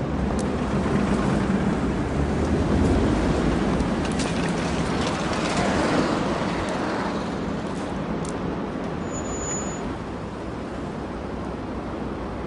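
Road traffic: cars passing along a street, a swell of engine and tyre noise that builds over the first few seconds and eases off after about seven.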